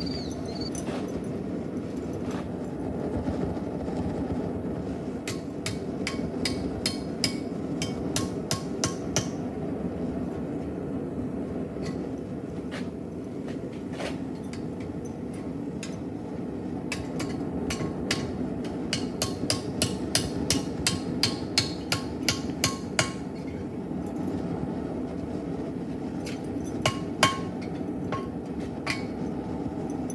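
Hand hammer striking a length of one-inch rebar held in tongs, driving it down onto an axe blade clamped in a vise to split open the saw cuts; sharp metal-on-metal blows come in several runs of quick strikes, busiest in the middle of the stretch. A steady low rushing sound runs underneath.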